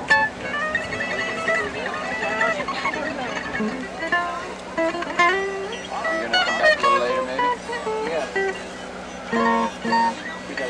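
Guitar playing a quick run of picked single notes, a few of them sliding in pitch, with a burst of quick chord strokes near the end.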